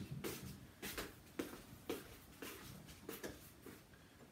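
Varnish brush swishing across a string instrument's body as oil varnish is worked on, in short strokes about two a second.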